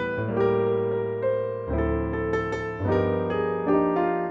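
Roland RP102 digital piano played on its default concert piano sound: two-handed chords over bass notes, a new chord struck about once a second and left to ring.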